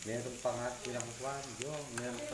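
Pork belly slices and vegetables sizzling on a tabletop Korean barbecue grill pan, with a few sharp pops of spitting fat, under background voices.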